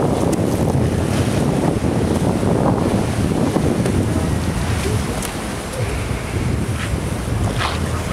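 Wind buffeting the microphone in a steady low rumble, with surf washing on the shore behind it.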